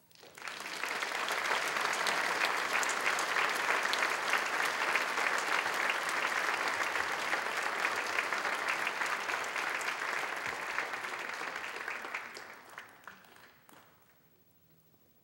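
Audience applauding, swelling within the first second, holding steady, then thinning out to a few last claps near the end.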